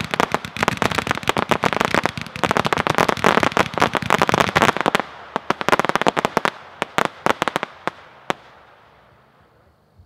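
182-shot consumer firework cake firing its red and blue crossette shots: a dense run of rapid sharp pops and cracks for about five seconds, thinning to scattered single reports and dying away near the end as the cake finishes.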